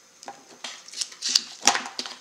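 Fingernails picking at a plastic sheet of glue dots: a handful of short, sharp clicks and scrapes as a dot refuses to come off.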